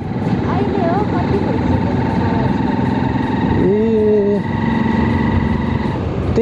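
Motorcycle riding along at steady speed, its engine and the wind and road noise heard from the handlebar-mounted camera as a continuous rumble. A brief held voice sound comes about four seconds in.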